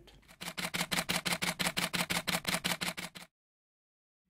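Rapid burst of camera shutter clicks, about nine a second, as from a camera firing in continuous mode, lasting about three seconds and then cutting off to dead silence.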